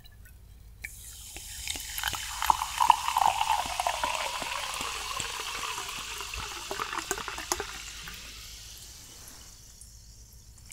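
Sparkling water poured from a glass bottle into a cut-crystal glass, starting about a second in, strongest a few seconds in, then tapering off as the pour slows. Many small crackles of fizzing bubbles run through it.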